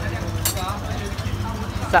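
A small engine running steadily at idle, a low pulsing rumble under brief voices.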